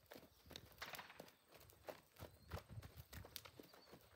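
Faint hoofbeats of a mare and her foal trotting on packed dirt: an uneven patter of soft thuds, several a second.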